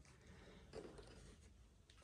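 Near silence: faint room tone with a little soft rubbing noise about a second in.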